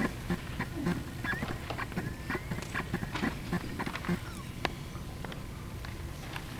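Room noise before a piano piece: scattered small clicks, knocks and rustles, with a couple of brief squeaks in the first half, and no piano playing.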